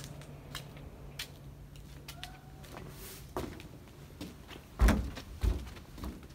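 Footsteps on a moving truck's metal loading ramp and cargo floor: scattered light clicks and knocks, then two heavy thumps near the end.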